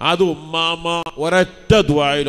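A man's voice chanting melodically in short phrases with long held notes, in the style of a devotional recitation.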